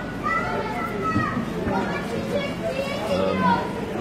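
Children's high voices talking and calling out in the background.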